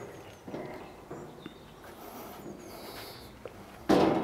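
Thin sheet-metal cabinet doors of a Tepro gas grill being handled, with a few faint light clicks, then a sudden louder knock near the end as a door is pushed shut.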